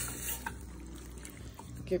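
Faint wet sizzle of a chili mixture of vegetables, beans, corn and tomatoes cooking in a steel pot, with a few soft stirring sounds from a wooden spoon.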